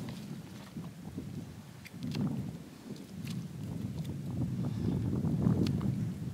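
Wind buffeting the microphone in a low rumble, with a few faint crunches of snow being packed by hand into a gutted rabbit's body cavity.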